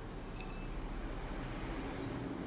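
An electric fan switched on with a click about half a second in, then running with a low steady hum as it blows air over glowing charcoal.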